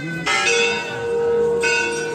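A temple bell struck twice, first about a quarter second in and again about a second and a half later, each strike ringing on with several steady tones.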